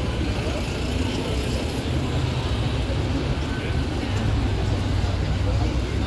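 Busy city street ambience: a steady rumble of road traffic under the chatter of a crowd of passers-by.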